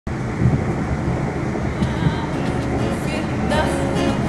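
Steady low rumble of a moving train, heard from inside the carriage. Plucked acoustic guitar notes come in near the end.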